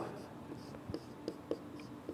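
Marker writing on a whiteboard: faint scratchy strokes and light ticks of the tip on the board, several times.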